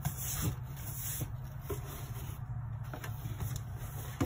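Cardboard rubbing and scraping as a boxed product is slid up and out of a corrugated cardboard shipping carton, with a few light ticks, over a steady low hum.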